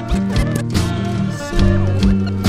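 Lo-fi hip-hop beat made on turntables from scratched records: held bass notes and regular drum hits, with short record scratches sliding up and down in pitch over them.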